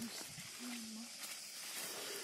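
A steady, high-pitched hiss fills the background throughout, with a brief snatch of a voice a little before the middle.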